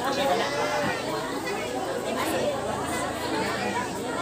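Many voices chattering at once, overlapping so that no single speaker stands out.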